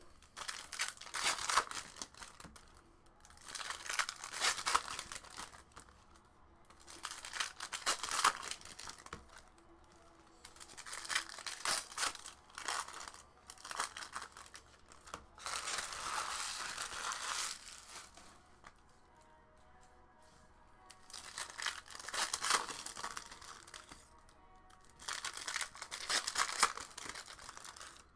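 Foil wrappers of Topps Chrome baseball card packs being torn open and crinkled by hand, in about eight separate bursts, one every three to four seconds.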